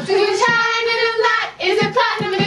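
Girls singing in high voices, holding a long steady note about half a second in, then breaking off briefly before singing on.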